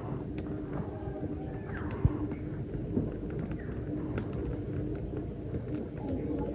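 Birds calling in woodland, including a low, repeated cooing call, with scattered crackles of dry leaf litter and a single thump about two seconds in.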